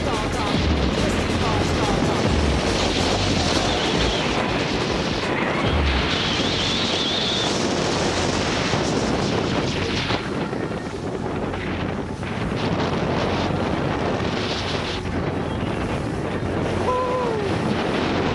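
Steady wind rush on the microphone of a camera moving fast down a ski slope, mixed with the hiss of sliding over packed snow.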